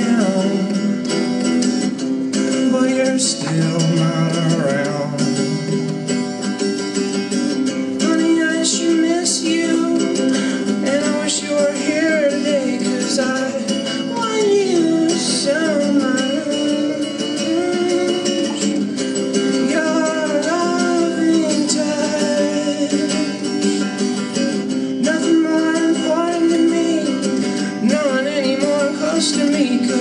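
A man singing to his own strummed hollow-body electric guitar, steady chords under a sung melody line.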